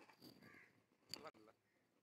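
Near silence on a call line, with faint voices in the background and one brief sharp sound about a second in.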